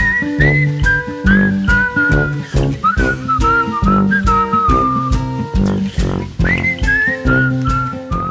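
Background music: an upbeat track with a whistled melody over bass notes and a steady beat.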